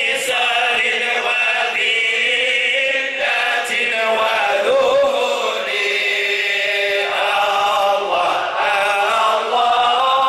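A group of men chanting a Sufi dhikr together, unaccompanied, in long melodic sung lines with no drum or instrument.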